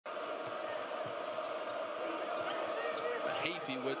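Basketball being dribbled on a hardwood court, a few separate bounces, over the steady murmur of an arena crowd. A commentator's voice comes in near the end.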